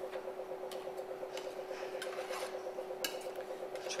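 A scraper drawn across the top of a filled chocolate mould to seal the cavities, giving a few short scrapes and light clicks, over the steady, fast-pulsing hum of a chocolate tempering machine.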